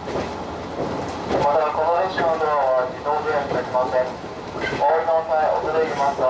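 A 115-series electric train running along the track, heard from inside the driver's cab, with a steady rumble. A voice comes over it at intervals.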